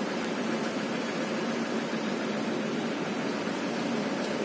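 Steady background noise, an even hiss with a faint low hum underneath, unchanging with no distinct events.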